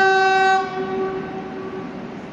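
Horn of an arriving Renfe S-451 double-decker commuter train: the end of a second blast that stops about half a second in, its tones dying away over the following second. A steady rumble of the approaching train runs underneath.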